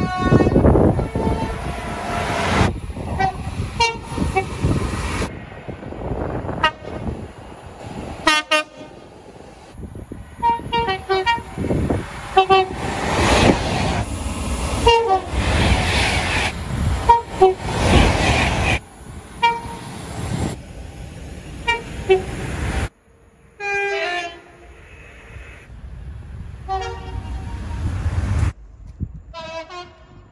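A montage of short clips of electric trains passing at speed, sounding short two-tone horn blasts over the loud rush of their passing, with abrupt cuts between clips. One of the trains is an Avanti West Coast Pendolino.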